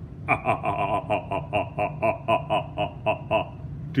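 A man laughing: a long run of quick, evenly spaced "ha" pulses, about four or five a second, lasting about three seconds.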